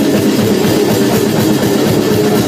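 Metal band playing live, loud and dense: electric bass, guitar and drum kit playing together without a break.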